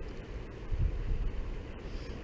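Wind buffeting the camera's microphone: a steady low rumble that swells briefly just under a second in.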